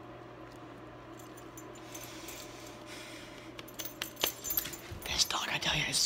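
Low steady room hum, then about three and a half seconds in a short run of light metallic jingling and clicks, followed near the end by a man's voice.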